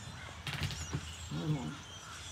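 A flock of birds calling from the trees, a scatter of small high chirps and calls, with a short rustle about half a second in.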